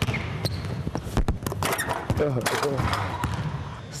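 Basketball bouncing on a hardwood gym floor as a player dribbles: a series of sharp bounces at an uneven pace, with a voice heard briefly about halfway through.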